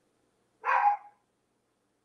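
A single short dog bark, just over half a second in.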